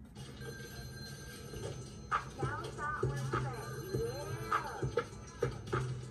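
Telephone ringing with a warbling electronic trill, starting about two seconds in. It is played back from the opening scene of a music video, over a steady low hum and scattered clicks.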